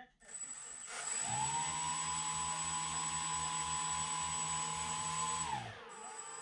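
The twin Turnigy 2826 2200kv brushless motors of a Nano Drak 28 flying wing spin their props up together on the bench. They hold a steady whine with a slow pulsing beat from the two motors turning at slightly different speeds, then spool down near the end. They are driven by bidirectional ESCs and run counter-rotating.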